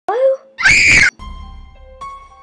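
A short rising vocal cry, then a loud human scream lasting about half a second that cuts off abruptly; music with held notes begins straight after.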